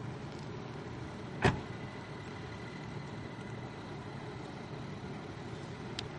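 Steady low background rumble, with one sharp knock about a second and a half in.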